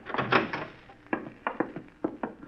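Radio-drama sound effect of two men's footsteps walking off: a series of short, irregular knocks.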